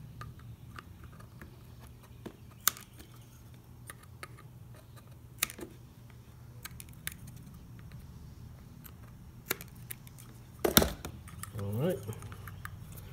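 Scattered light clicks and snips of scissors trimming the corners of double-sided adhesive tape on the back of a small blind-spot mirror, with handling taps as the tape is pressed down and a louder cluster of clicks near the end, over a faint low hum.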